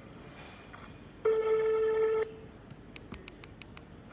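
A telephone tone on an outgoing call sounds steadily for about a second, then a quick run of faint clicks follows.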